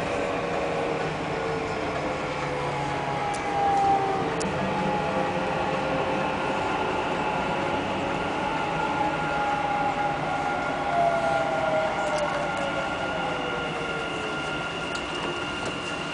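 Dubai Metro train running, heard from inside the front car: a steady rumble of the train on the track with a motor whine. The whine's pitch slides slowly downward in the second half.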